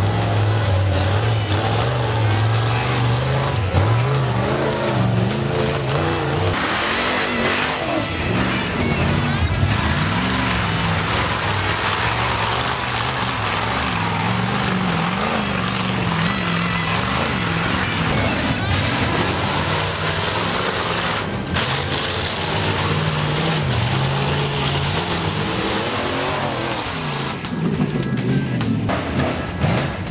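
An off-road hill-climb buggy's engine revving hard as it claws up a steep rocky slope, mixed with a music track playing over it.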